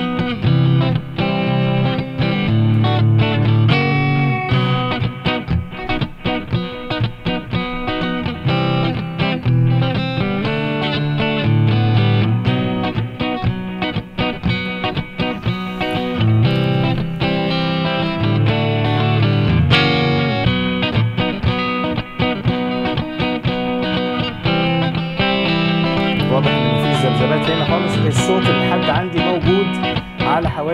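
A recorded guitar track playing back continuously through a channel equaliser, its bass raised slightly and its low mids cut.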